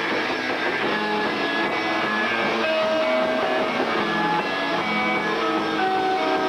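A rock band playing live: electric guitar with drums, loud and steady throughout.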